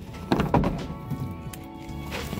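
Background music, with two knocks about half a second in as books are pushed into a wooden book-return slot.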